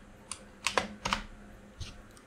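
Computer keyboard keystrokes: a handful of separate key presses, irregularly spaced, as a search query is typed and entered.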